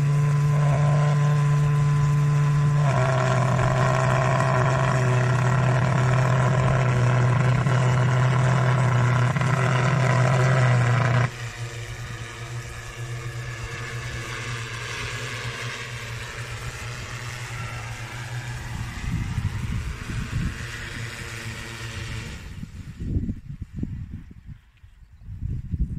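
Crop-spraying drone's fogger unit and propellers running together as one loud, steady low hum. The hum drops sharply about 11 seconds in, leaving the quieter whir of the multirotor's propellers. The propellers wind down and stop shortly before the end as the drone lands.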